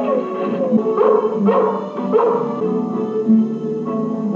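A rough collie barks about three times, short and sharp, over a guitar-led music score.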